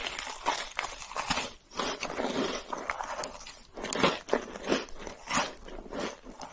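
Biting and chewing a chocolate chip cookie sandwich filled with marshmallow: irregular crunches several times a second, with brief lulls between bites.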